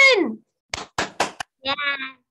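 A voice over a video call ending a word on a falling pitch, then four quick sharp clicks in well under a second, then a voice starting again.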